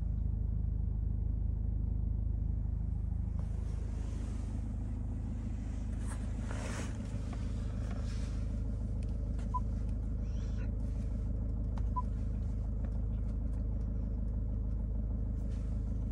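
Jaguar XF engine idling steadily, heard from inside the cabin as a low, even rumble. Two short high beeps, about two and a half seconds apart, and a few light clicks come from the dashboard touchscreen being pressed.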